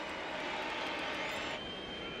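Stadium crowd cheering, a steady wash of noise, with a thin high whistle-like tone near the end.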